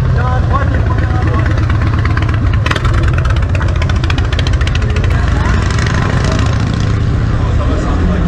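Motorcycle V-twin engines running at low speed as a bike rides slowly past through a crowd, with a run of rapid sharp exhaust pulses in the middle. People are chattering around it.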